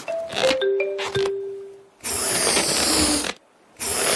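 Cartoon sound effects of inflatable water wings being blown up. A few squeaky, rubbery tones stepping down in pitch come first, then two long breathy puffs of air with a short gap between them.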